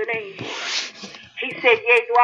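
A preacher's voice speaking in a sermon, broken about half a second in by a short rubbing hiss, then speaking again near the end.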